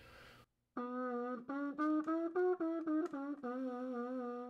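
Trumpet played with a practice mute in the bell, starting about a second in: about a dozen short tongued notes that climb by steps and come back down, ending on a longer held low note. The sound is quiet and thin, damped by the mute.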